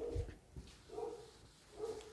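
A dog barking faintly in the background, short calls about once a second.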